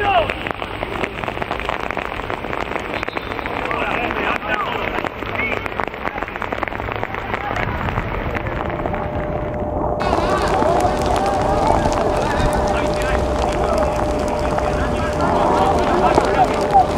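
Football match sounds in the rain: voices calling out across the pitch over a steady hiss of rain, with an abrupt cut in the sound about ten seconds in.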